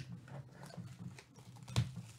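Hands handling a shrink-wrapped cardboard trading-card box, fingers picking at the plastic wrap to open it: a few light taps and crinkles, the loudest just before the end.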